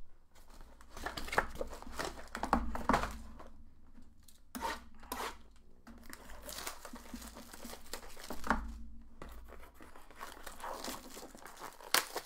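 Foil trading-card pack wrappers being torn open and crinkled by hand, with irregular crackles and rustles.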